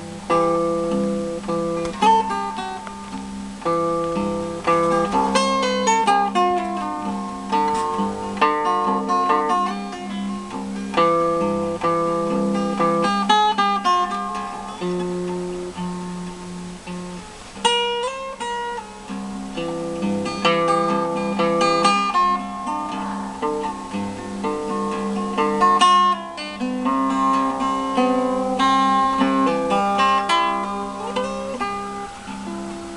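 1929 Gibson L-40 black archtop acoustic guitar fingerpicked in a blues tune: a held bass note runs under picked melody notes, with a few notes slid up or down.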